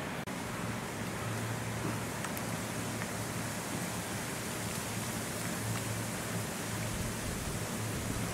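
Steady outdoor background hiss, even and unchanging, with a faint low hum underneath and a few faint ticks.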